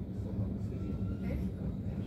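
A train running along the track, heard from inside the carriage: a steady low rumble.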